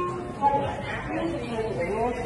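Speech only: indistinct voices talking over one another.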